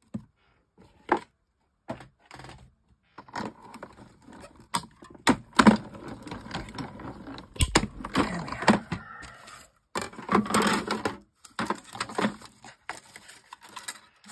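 Clear acrylic cutting plates and card being handled and fed through a die-cutting machine: irregular clicks, knocks and stretches of scraping, with one sharp knock about halfway through.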